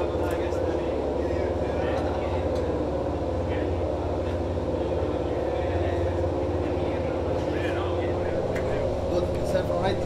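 Racing motorcycle engine idling steadily, a constant low engine note under faint voices.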